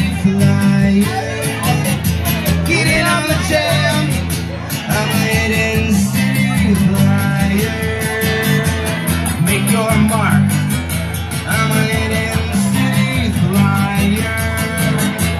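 Live acoustic guitar strummed in a steady rhythm, with a man's voice singing the melody over it.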